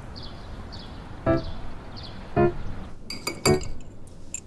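Light background music: short, separate pitched notes about a second apart, with a quick cluster of bright clinks about three seconds in.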